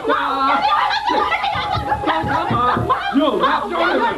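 Several adult voices, women and a man, shouting over each other in a heated argument in Burmese.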